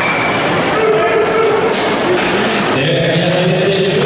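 Crowd noise in an ice hockey arena during play: a steady, loud din of many voices and hall echo, with a few short high scrapes that fit skates on the ice. About three seconds in, steadier held tones join the din.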